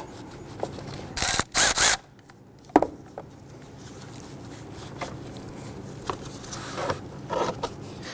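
Metal clatter from handling a car battery's disconnected negative terminal clamp: two short rattles about a second in, a sharp click near three seconds, then a few faint taps.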